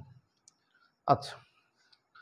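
A man's voice saying one short word about a second in, with a faint click or two; otherwise near silence.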